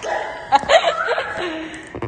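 A woman's brief laughing and breathy vocal sounds, with a couple of sharp knocks about half a second in as the camera is handled and moved.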